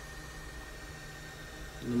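Steady low background hum with a faint hiss, in a pause between words; a man's voice starts again near the end.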